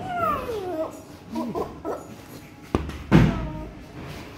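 A toddler's wordless vocal sounds: one long cry falling in pitch, then a few short babbling calls. Two sharp thumps follow near the end, the second the loudest.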